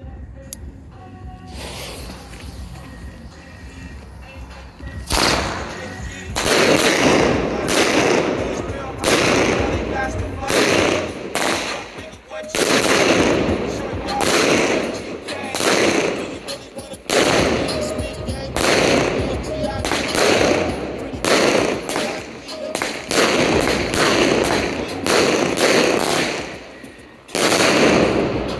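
Multi-shot consumer firework cake (All Jacked Up) firing. A few seconds of quiet fuse, then a steady run of shots, about one a second, starting about five seconds in and lasting over twenty seconds.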